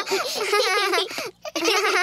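Two young children's voices giggling together, with a brief pause about a second and a half in before the laughter picks up again.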